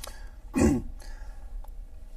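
A person clearing their throat once, a short, loud burst about half a second in.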